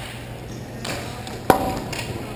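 A hockey puck struck hard: one sharp crack with a short ringing tone about one and a half seconds in, over a steady low hum of arena noise.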